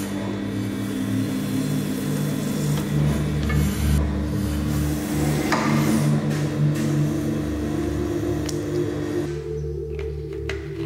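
Leather bell skiving machine running with a steady motor hum while leather is fed through its knife, under background music. The hum stops shortly before the end.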